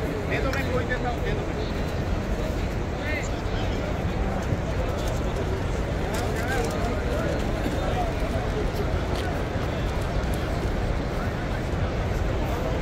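Steady babble of a large seated crowd talking, with many overlapping voices and no single voice standing out.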